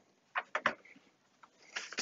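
A few quick, light knocks about half a second in as a Keithley 195A benchtop multimeter is set down on a rubber bench mat.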